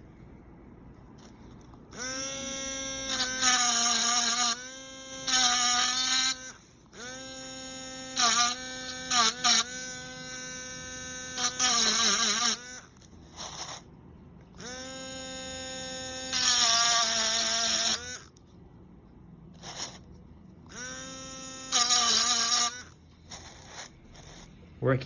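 Dremel tool with a diamond point engraving sterling silver: its small motor whines steadily in about five separate runs, starting and stopping between them. It grows louder and harsher in stretches as the point cuts into the metal.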